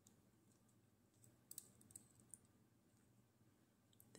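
Faint light metallic clicks from a T8 Torx driver and a small screw being backed out of a CRKT Fossil folding knife, a few clicks between about one and two and a half seconds in, otherwise near silence.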